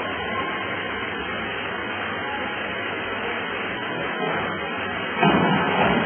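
Steady noisy background of a crowded indoor pool hall, rising suddenly to a louder rush of noise about five seconds in.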